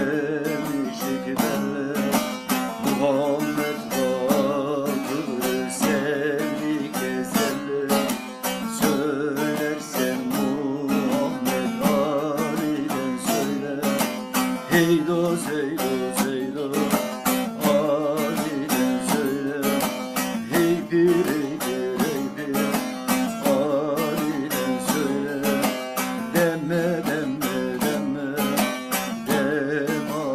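Bağlama (long-necked saz) played with fast, continuous strumming and picking of a melody.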